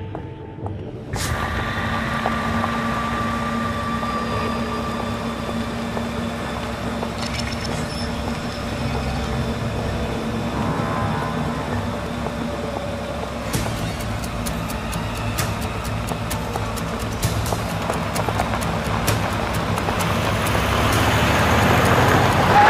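A van's engine running under music, which comes in suddenly about a second in. From about halfway a rapid run of clicks joins it, and the sound swells near the end.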